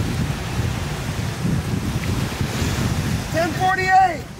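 Wind buffeting the microphone over breaking surf, a steady low rumble. Near the end a person shouts out once, briefly.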